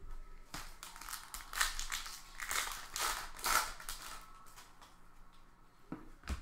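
Hands flipping through a stack of trading cards beside a foil card-pack wrapper: a string of dry rustles and swishes as the cards slide against each other and the wrapper crinkles, loudest around the middle and dying down near the end.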